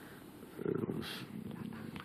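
A man's quiet breath and a murmured hesitation 'eh', picked up close on a headset microphone, in a pause in his speech.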